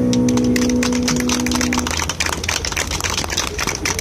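Audience clapping, starting about half a second in as the song ends. The song's last chord rings underneath and dies away about two seconds in.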